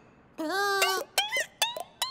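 A cartoon chick's voice: a whining call about half a second long, then a quick run of short, high chirps, each dropping in pitch.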